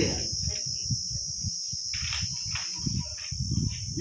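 A steady high-pitched buzzing drone with irregular low rumbling wind on the microphone, and a few faint distant voices.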